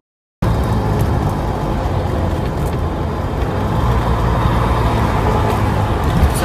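Inside a Trabant driving at motorway speed: the car's engine and road noise make a steady drone. It starts suddenly after a split second of dead silence.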